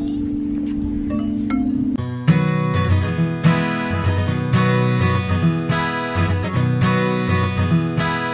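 Metal tube chimes of an outdoor musical instrument struck with a mallet, ringing with sustained tones. About two seconds in they cut off and background music with guitar takes over.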